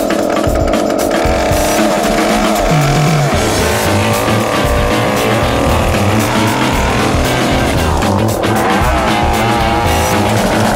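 Petrol two-stroke chainsaw running and revving up and down as it cuts through thick hedge trunks, under background music.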